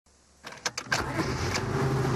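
A few sharp clicks of a key going into and turning in a car's ignition, then the engine starts about a second in and runs steadily.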